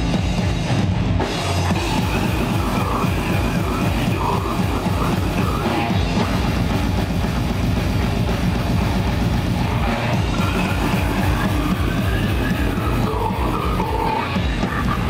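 A live metal band playing loud: distorted electric guitars, bass guitar and a drum kit, with a fast, steady bass-drum beat throughout.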